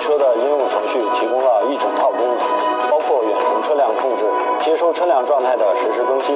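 Mandarin speech over background music, with a thin sound that has no bass.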